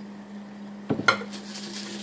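A large glass jar of ginseng liqueur knocking against the counter as it is stood upright, a couple of sharp clinks about a second in, with a short rustle of liquid after them.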